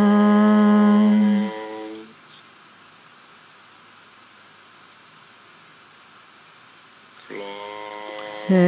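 A voice holding one long, low hummed tone, steady in pitch and rich in overtones, dying away about two seconds in. Only a faint hiss follows until a new held tone starts softly near the end.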